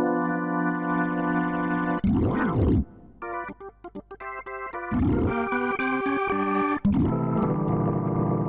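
Arturia AstroLab stage keyboard playing its Jazz B3 (Hammond-style) organ preset with distortion and brightness turned up. Held chords give way to a quieter passage of short staccato chords in the middle, and quick sweeps up and down in pitch come about two, five and seven seconds in.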